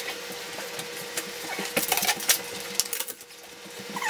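Scattered light clicks, taps and rubbing as a bed frame and mattress are wiped down and things are handled, over a steady low hum.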